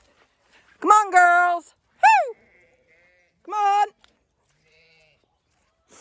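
A shepherd calling her flock of ewes in from the field: three loud, drawn-out calls, the middle one short and high with a rise and fall.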